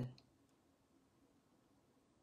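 Near silence: room tone, with one faint click shortly after the start.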